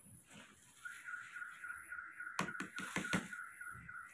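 A few light clicks and scrapes of a spoon in a small bowl of porridge, a little past the middle. Under them a thin, high, steady whine sets in about a second in and carries on.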